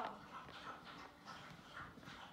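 Faint, soft, repeated sounds of a dog lapping water.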